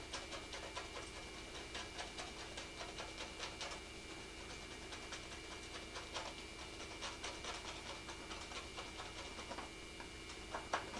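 Faint, irregular scratchy strokes of a painting tool working oil paint on a canvas, several a second, over a steady electrical hum.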